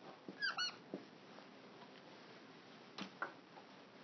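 Dry-erase marker squeaking on a whiteboard, two short squeaks about half a second in, followed by a couple of faint clicks about three seconds in.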